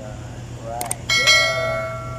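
Subscribe-button animation sound effect: a short click, then a bright bell ding about a second in that rings on and fades over about a second and a half.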